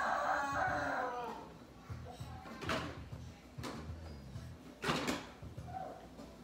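An electronic toy farm playing a recorded rooster crow, one rising-then-falling call in the first second or so. Then a few sharp knocks of plastic toys, the loudest two about midway and near the end.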